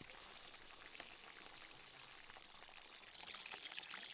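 Faint sizzling of food frying in oil in a large metal cauldron (kazan), a soft steady hiss that grows louder again with small crackles about three seconds in.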